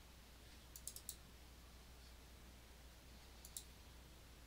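Faint computer mouse clicks: a quick run of three or four about a second in, and two more near the end, over a low steady hum.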